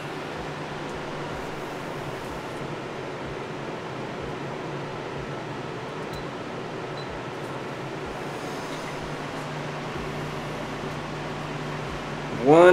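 Steady fan noise: an even hiss of moving air with a constant low hum.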